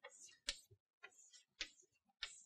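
Chalk tapping against a blackboard as small shapes are drawn: four faint ticks about half a second apart in a quiet room.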